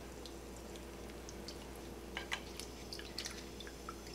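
A pot of blanching water just loaded with sliced potatoes, giving faint scattered ticks and pops of bubbling as it works back toward the boil, over a steady low hum.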